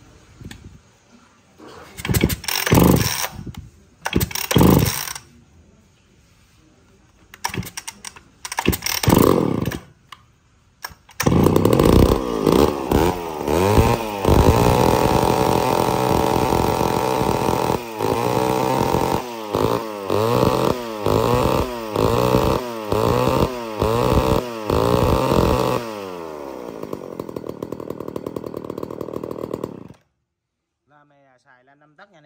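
McCulloch Pro Mac 570 two-stroke chainsaw being pull-started: three short bursts on the starter cord, then it catches about eleven seconds in. It is revved with repeated throttle blips, about one a second, then drops back to a steadier, quieter idle near the end.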